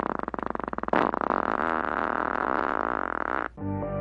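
Comic fart sound effects: a rapid run of pops for about a second, then a longer buzzy one that wavers in pitch and cuts off suddenly. Synth outro music starts near the end.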